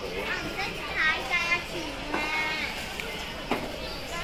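High-pitched children's voices calling and chattering, loudest about a second in and again around two seconds, over the general hubbub of a busy shop.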